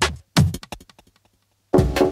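Electronic background music: a heavy bass-drum hit about a third of a second in, trailing off in a quick run of fading repeats. It goes silent for about half a second, then comes back near the end with another heavy hit and a held synth chord.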